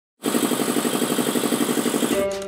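Prebena Vigon 300 piston air compressor running, with a steady rapid pulse of about a dozen beats a second. It starts abruptly a quarter second in.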